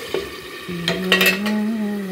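A steel lid clatters as it is set onto a stainless-steel kadai with food frying inside, in a quick cluster of metal clicks about a second in. A steady low hum comes in just before and holds to the end.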